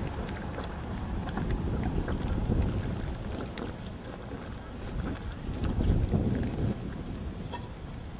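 Low rumbling wind and handling noise on the camera microphone, swelling and fading twice, with a few faint clicks.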